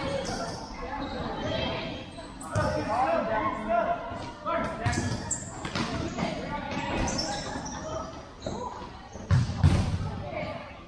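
Futsal ball being kicked and bouncing on an indoor sport-tile court in a large hall, a scatter of sharp knocks with the loudest thumps near the end.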